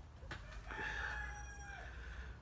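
A faint, distant animal call, held at a steady pitch for about a second, starting near the middle.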